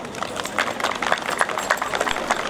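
Applause: a group of people clapping, with some individual hand claps sharp and close.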